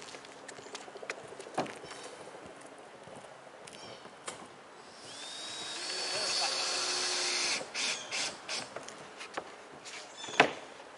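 Cordless drill on a roof of OSB sheathing: about halfway through the motor spins up with a rising whine and runs for two to three seconds, then gives a few short bursts. Scattered knocks come before it.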